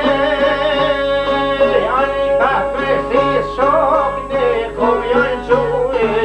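A man singing an Albanian folk song over a çifteli, the two-string long-necked lute, which plucks a steady repeating drone. From about two seconds in the voice comes in with a wavering, ornamented line.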